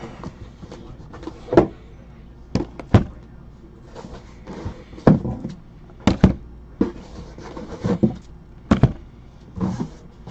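Shrink-wrapped Panini Black Gold football card boxes being set down and shifted on a table mat: a string of short thuds and knocks about a second apart, with a little plastic rustle between them.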